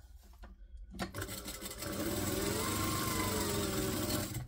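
Mitsubishi industrial lockstitch sewing machine stitching a seam. It starts about a second in, speeds up, then slows and stops near the end.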